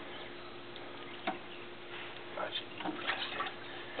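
A hand rummaging in a plastic bucket, giving a few faint clicks and knocks over a low steady hum. A short mumbled word comes near the end.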